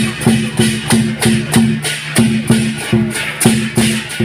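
Lion dance percussion of drum, cymbals and gong played together in a steady, even beat of about three strikes a second, each strike with a bright cymbal crash over a low ringing tone.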